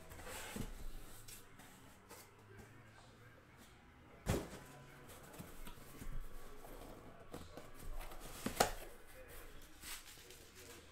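Cardboard boxes being handled and set down on a table: light scuffing and rustling, with two sharp knocks, one about four seconds in and a louder one past eight seconds.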